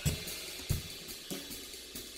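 Quiet background music with a light hi-hat and cymbal beat.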